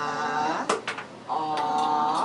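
A woman saying vowel sounds aloud as phonics drill, each drawn out into a steady held tone of about a second, two in a row, with a short sharp click between them.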